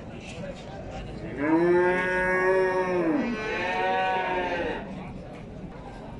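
A bull mooing twice in quick succession. The first moo is long, about two seconds, and falls in pitch at its end. The second, shorter moo follows straight after.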